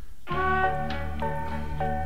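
A submitted hip-hop instrumental beat playing over the studio monitors. A brief dip opens it, then about a third of a second in a sampled passage of held chords comes in, changing every half second or so.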